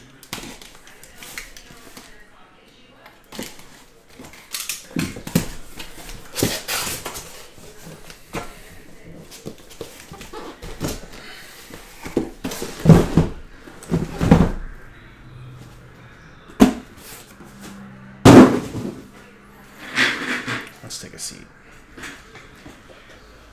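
A cardboard shipping case being opened by hand, its flaps pulled apart with rustling and scraping, and sealed card boxes knocked and set down on the table in a string of irregular thumps.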